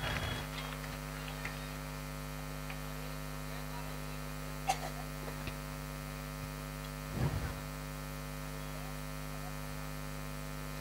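Faint, steady electrical mains hum from a stage PA sound system, with a small click about five seconds in and a brief faint sound about seven seconds in.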